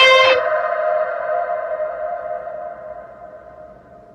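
Electric guitar's final held note ringing out and fading away steadily over about four seconds as the song ends, after the rest of the chord stops sharply just after the start.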